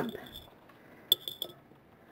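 A few light clinks as tweezers tap against a plate of water holding a nail water decal, about a second in.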